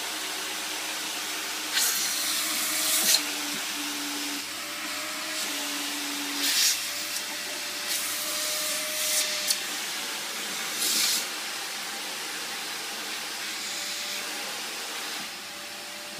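Vacuum cleaner running steadily, its air rushing through the hose and nozzle with a hiss that gets louder in short spells about four times.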